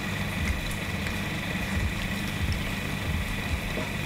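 A steady low mechanical hum runs under the scene, unchanged throughout, with a few faint ticks over it.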